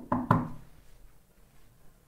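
A single brief knock a moment after the start, followed by faint room tone.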